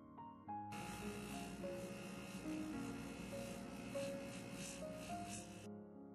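Soft background music with held notes. A steady whir of a small electric motor starts abruptly under a second in and cuts off near the end.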